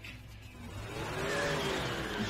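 Car engine revving and accelerating away, growing steadily louder, as a sound effect in an anime's soundtrack.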